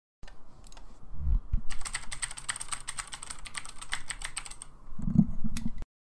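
Typing on a computer keyboard: a quick, irregular run of key clicks lasting about three seconds, with a few low thumps shortly before it starts and again near the end.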